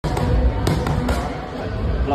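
Gloved punches smacking against pads held by a trainer in Muay Thai pad work: a few sharp hits, the loudest about two-thirds of a second in.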